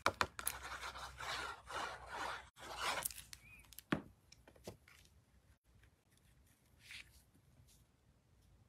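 A Stampin' Seal adhesive tape runner is drawn across the back of a cardstock panel in about four strokes, each a short scraping rasp, over the first three seconds. A couple of soft clicks and light paper handling follow as the panel is laid and pressed onto the card base.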